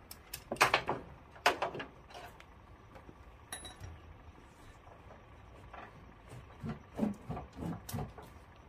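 Ratchet strap being worked at a car's wheel on a trailer: a few sharp metal clacks and rattles in the first two seconds, then a cluster of duller knocks near the end.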